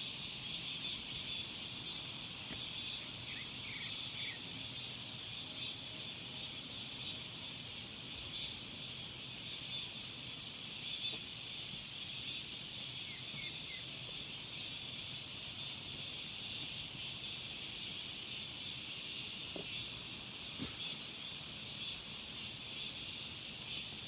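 A chorus of many cicadas buzzing steadily in high pitch, swelling louder about halfway through.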